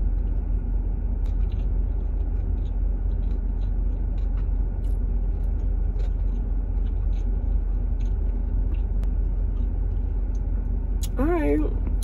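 Steady low rumble and hiss of a car idling, heard from inside the cabin, with a few faint small clicks.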